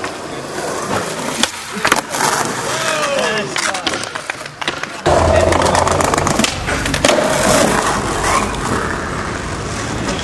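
Skateboard wheels rolling over concrete, with sharp clacks of the board hitting the ground about one and a half and two seconds in. About five seconds in it changes abruptly to louder, lower wheel noise of a board riding a ledge and paving.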